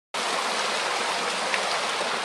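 Small rock waterfall splashing into a pool, a steady even rush of water that starts just after the beginning.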